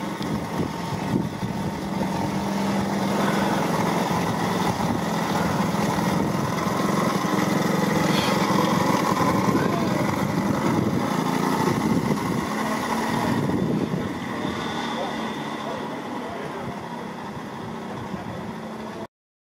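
Small combustion engine of a ride-on miniature-railway locotractor running under way on its first trial. It grows louder towards the middle and fades over the last few seconds as the locomotive moves off.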